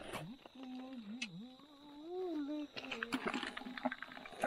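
A man's voice in a drawn-out, wavering hum lasting about two seconds, then a shorter one, with a few short clicks and knocks from hands working among wet stones in the water.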